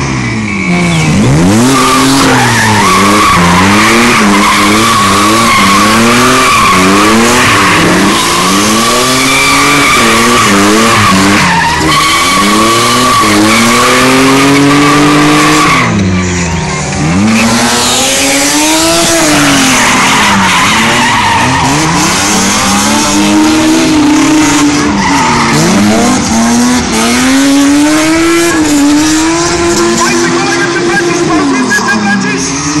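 BMW E30 drift car's engine revving up and down over and over as it slides through the corners. Its tyres squeal steadily from about two seconds in until about sixteen seconds in; after a short dip the revving carries on.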